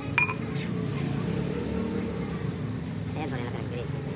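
Men's voices talking in the background, with one short metallic clink a fraction of a second in as a metal ring is handled on a steel shaft.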